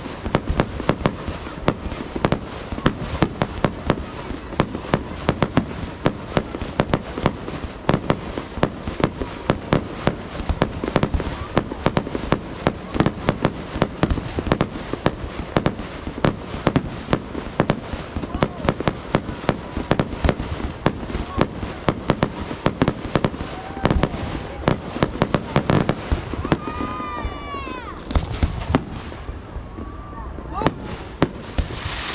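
Fireworks display: a dense barrage of bangs and crackling, many reports a second, with a few whistling shells near the end.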